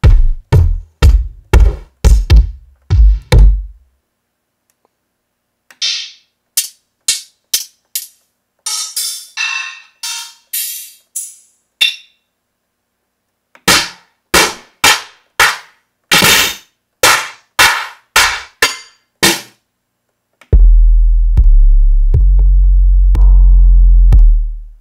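One-shot drum samples from a 90s-style hip-hop sample pack, auditioned one after another. About nine kick drums come in quick succession, then hi-hats and open hats, then a run of percussion hits. Near the end a heavy kick sounds as a long, deep boom.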